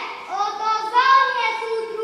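A young child singing into a microphone in short held phrases.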